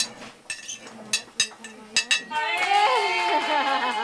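A metal spoon clinking and scraping against a ceramic plate in a few sharp clicks. About two seconds in, a short passage of music takes over.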